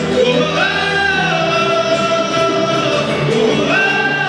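A live band playing, with a male lead singer holding long sung notes over acoustic guitars and hand drums.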